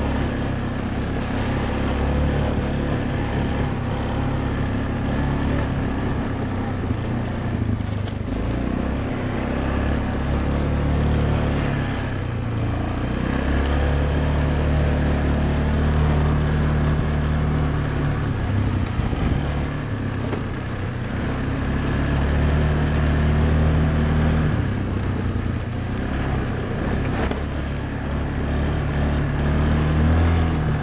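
Yamaha ATV's single-cylinder engine running hard along a trail, its note rising and falling several times as the throttle is opened and eased.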